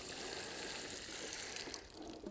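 Water pouring from a plastic watering can onto the soil of a freshly planted maize plant, watering it in. It makes a steady splashing hiss that stops shortly before the end.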